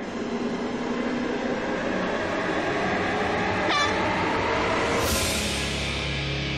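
A horn held in a long steady blast, the host's start signal for a run, with a rising whistle a little before four seconds in and a rush of noise near the end.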